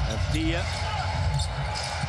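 Live court sound of a professional basketball game: a basketball being dribbled on the hardwood over a steady arena crowd murmur.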